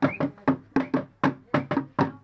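Hand-played barrel drums beaten in a steady, fast rhythm, about four sharp strokes a second, each with a short ring.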